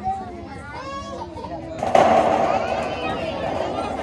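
A football hits a corrugated tin sheet with a sudden loud impact about two seconds in, then keeps the metal sounding with a sustained rattle as it rolls down the sheet. Crowd voices chatter before the impact.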